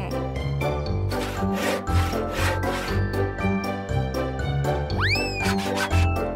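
Cartoon sound effect of a hand saw cutting through a wooden plank, a run of repeated sawing strokes, over bouncy children's background music. A swooping whistle-like glide comes near the end.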